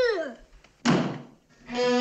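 A panelled front door slammed shut once, a sharp thud about a second in. Just before it a voice falls away, and near the end music comes in with a long held bowed-string note.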